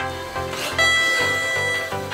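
Upbeat electronic dance background music; a little under a second in, a bright high tone comes in, louder, and holds for about a second.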